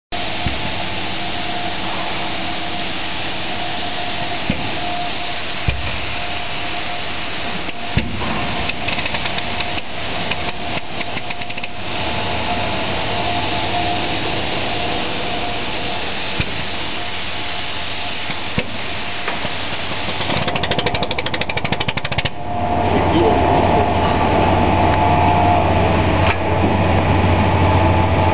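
Industrial machinery running steadily, with a few sharp knocks and clicks. About 22 seconds in the sound changes suddenly to a louder running with a low hum.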